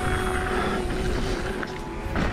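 Steady rumble of a Ragley hardtail mountain bike rolling fast down a gravel forest trail, with wind buffeting the microphone, under held notes of background music.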